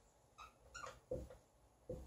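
Dry-erase marker writing on a whiteboard: a few short, faint squeaks and scratches as the strokes of a word are drawn.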